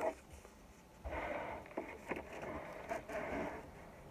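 Folded sheet of plain white paper rustling softly as it is opened out and smoothed on a table, starting about a second in, with a few small crackles.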